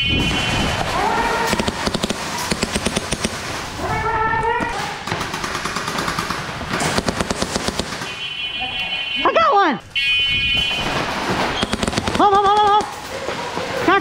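Airsoft guns firing rapid full-auto bursts in a large indoor hall, between short shouts from players.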